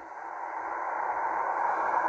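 Shortwave receiver hiss from an XHDATA D-808 portable tuned to upper sideband, with no voice on the channel. It is a steady, narrow, midrange hiss that slowly swells in loudness.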